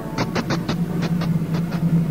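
Street-scene sound effect: a steady low traffic hum with light, quick clicks in an even walking rhythm, like footsteps on pavement.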